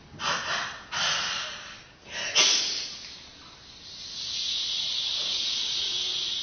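A woman's voice performing improvised sound poetry at a microphone: three short, breathy bursts of air in quick succession, then a long, steady hiss from about four seconds in.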